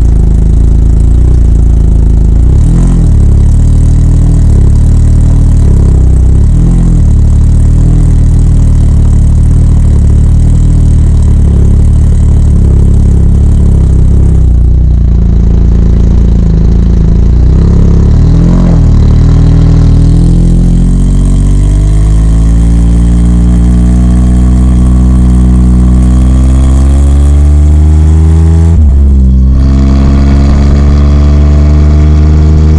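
Can-Am Spyder F3 Limited's Rotax 1330 three-cylinder engine, heard from right beside its catalytic-converter-delete exhaust. It rolls at low revs with a few short blips of the throttle, then accelerates steadily from about twenty seconds in, with a brief dip in revs near the end.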